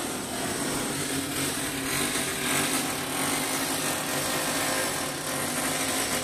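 A small motorised machine running steadily, with a constant mechanical drone.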